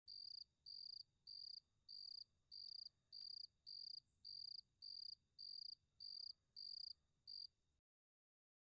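Faint cricket chirping in a steady rhythm, one short high chirp nearly every half second, stopping shortly before the end.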